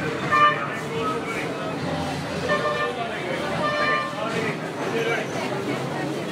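Vehicle horns in street traffic sound short toots three or four times over the talk of a crowd.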